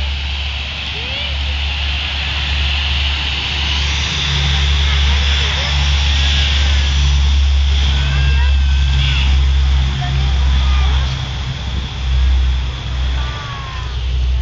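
C-130 Hercules transport plane's four turboprop engines running at a distance: a heavy, steady drone with a high whine that swells through the middle.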